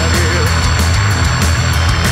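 Live rock band playing loud, heavy music with bass guitar and drums, the cymbal strikes coming at a steady beat. A held note glides down and fades about half a second in.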